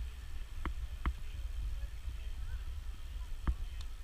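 Wind and road rumble on the microphone of a camera riding along on a moving bicycle, a steady low buffeting, with three sharp clicks.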